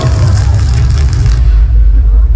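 Loud, deep bass rumble from a light show's soundtrack played over outdoor loudspeakers, with a high hiss that fades out about one and a half seconds in.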